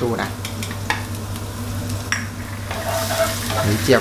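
Minced garlic sizzling steadily in hot rendered pork lard in a nonstick pan, with a wooden spatula stirring it.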